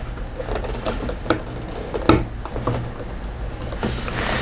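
A few faint clicks and rustles of multimeter test leads and probe plugs being handled, over a steady low hum.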